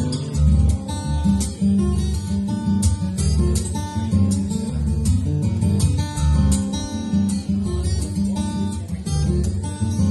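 Dion Model No.4 acoustic guitar played fingerstyle: a busy run of sharply attacked picked notes over ringing bass notes.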